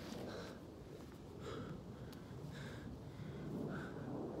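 A man breathing hard after a set of push-ups: four heavy breaths, about a second apart.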